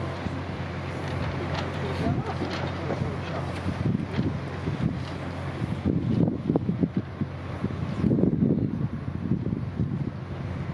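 Wind buffeting an outdoor microphone, in stronger gusts in the second half, over indistinct crowd chatter and a steady low hum.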